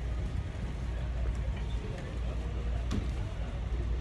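Low, steady rumble of a phone microphone rubbing and jostling against a denim jacket while walking, with one sharp click about three seconds in.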